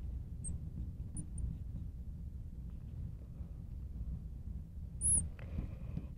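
Faint, brief squeaks of a marker writing on a glass lightboard, a few scattered through and the clearest about five seconds in, over a low steady hum.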